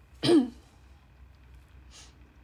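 A woman clearing her throat once, briefly, about a quarter second in. A short breathy hiss follows near the end.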